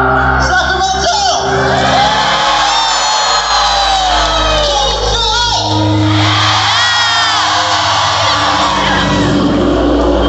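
Live concert music played loud over a hall's PA, with sustained bass notes and sung or held melodic lines. Audience members shout and whoop over it.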